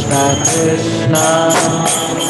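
Devotional kirtan: a voice sings a chant, with small metal hand cymbals striking about twice a second.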